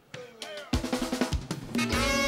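Live Haitian compas band striking up a song: after a quiet moment the drum kit comes in about two-thirds of a second in with loud kick-drum and snare hits, and sustained horn and keyboard notes join near the end.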